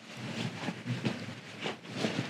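Irregular rustling and a few light knocks of bags and packed gear being handled and moved on a floor.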